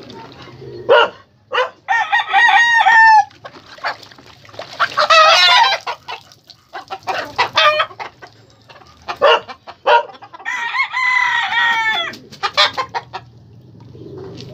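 Roosters crowing: three crows, about two, five and ten seconds in, with short sharp sounds between them.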